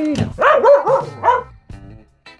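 A dog barking in a quick run of about five sharp barks within a second, over background music.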